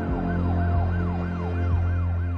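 Emergency-vehicle siren in a fast rise-and-fall yelp, about three sweeps a second, over a steady low music drone.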